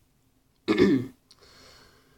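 A man clearing his throat once, a short rough burst about two-thirds of a second in.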